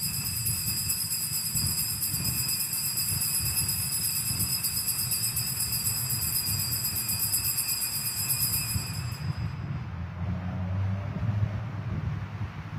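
Altar bells shaken continuously with a rapid high jingling ring to mark the elevation of the consecrated host at Mass. The ringing stops abruptly about three-quarters of the way through.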